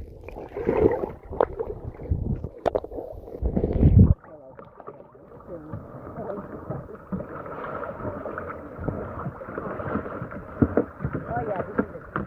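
Camera held under shallow lake water: muffled water rushing and bumping, loudest just before it cuts off about four seconds in. Then open air at a lake shore, with indistinct voices over lapping water.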